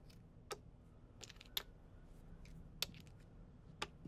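Scrabble tiles set down one at a time on a table as they are counted: a sharp single click about once a second at uneven spacing, over a low steady hum.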